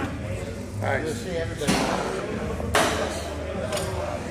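A man's strained voice and forceful, hissing exhales, two strong ones a second apart, as he pulls a heavy seated cable row. A steady low hum runs underneath.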